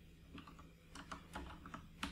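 Typing on a computer keyboard: a scattered run of light, faint keystrokes.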